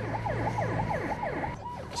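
Ambulance siren in a rapid yelp: quick falling sweeps, about five a second, over a steady low engine hum. It grows fainter near the end.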